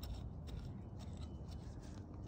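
Faint crackling and small snapping clicks of weeds and soil being worked by hand in a garlic bed, over a steady low rumble.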